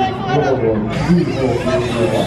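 Several people's voices chattering, with no words clear enough to make out.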